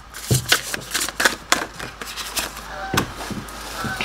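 Tarot deck being shuffled by hand: a quick, irregular run of card slaps and clicks.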